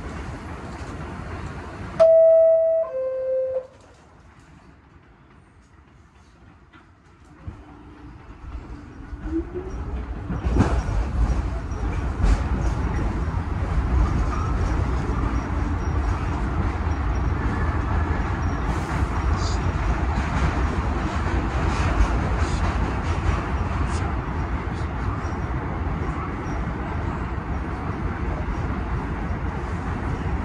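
A subway door chime sounds two descending notes about two seconds in. After a few quiet seconds a rising motor whine sets in, and from about ten seconds on the R46 subway train runs with a loud, steady rumble and rattle of wheels on the elevated track.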